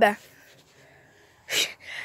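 A person's short, breathy intake of air, two quick hisses near the end, after a brief lull in the talk.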